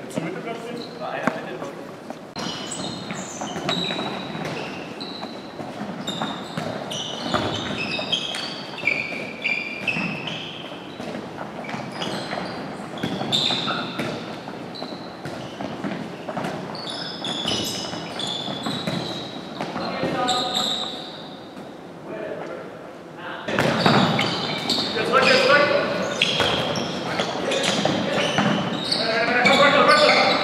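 Handball practice on an indoor court: balls bouncing and thudding on the wooden floor, with sports shoes squeaking and players' voices calling out, echoing in a large hall. The activity gets busier and louder in the last few seconds.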